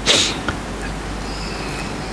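A man sniffs once, sharply, right at the start. Then there is quiet room tone with a low, steady hum.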